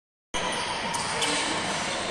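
Sounds of a basketball game in a large, mostly empty indoor arena: steady hall noise with faint voices and a couple of short knocks about a second in. It begins after a brief silence.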